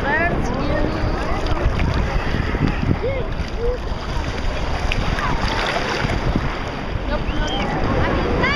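Wind buffeting the microphone over choppy water sloshing around a wader's legs, a steady rumbling noise, with brief faint voices now and then.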